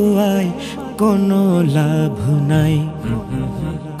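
Male voice singing a Bengali naat (Islamic devotional song) in long, wavering held notes with a slow downward glide about halfway through, over a steady low drone.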